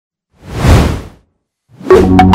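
A whoosh sound effect that swells and fades over about a second, followed by a short silence and a sudden hit right at the end as a logo-intro music sting begins.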